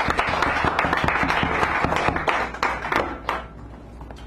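Audience applauding at the end of a poem. The clapping thins to a few last claps and dies away about three seconds in.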